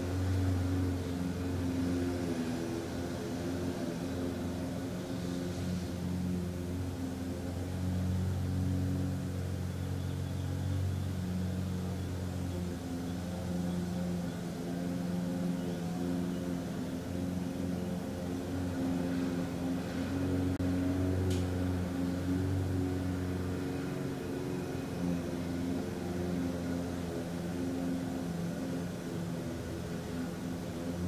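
Steady low hum and rumble, with a faint click about 21 seconds in.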